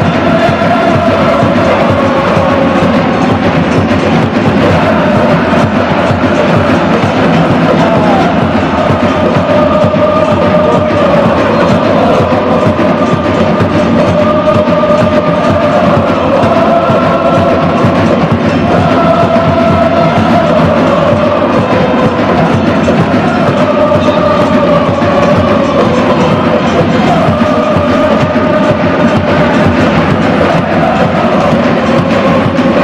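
A stadium crowd of football supporters chanting a wordless 'oh-oh-oh' chant in unison, sung in long held notes that step up and down, with drums beating underneath.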